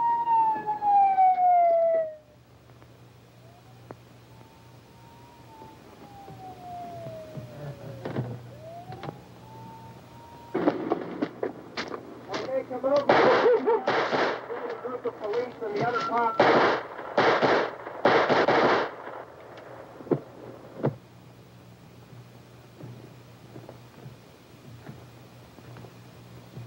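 A siren wails, rising and falling in long slow sweeps, for about the first ten seconds. It is followed around the middle by a rapid volley of about eight gunshots from the posse's rifles and pistols.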